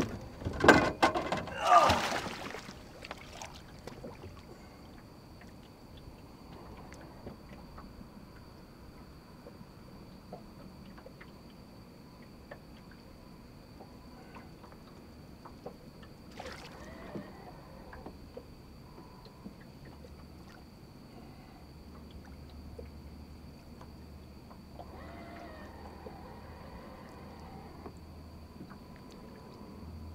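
Water splashing as a large flathead catfish is lowered over the side of a boat, with a few loud splashes in the first two seconds. After that, quiet sloshing and lapping as the fish is held in the water to be released.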